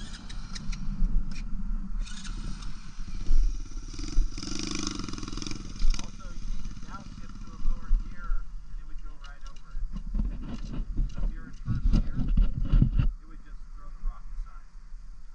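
Dirt bike engine running and revving unevenly, loudest from about ten to thirteen seconds in, as the bike is worked over an obstacle.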